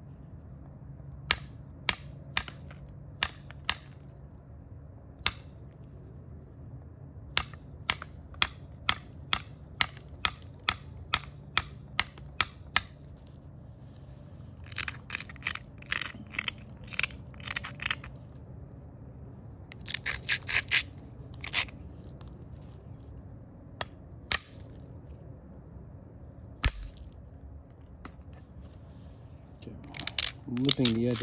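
Knapping tools working the edge of a rhyolite preform: scattered sharp clicks, then a run of evenly spaced clicks, about two a second, followed by several bursts of quick scratchy scraping against the stone, and a couple of lone clicks near the end.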